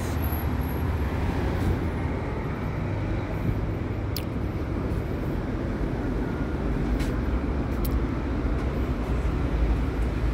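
Steady street traffic noise, a low rumble of passing cars, with a few faint clicks.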